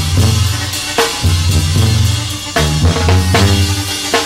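Instrumental band music with no singing: a drum kit with bass drum and snare over a deep bass line of held notes, each about a second long.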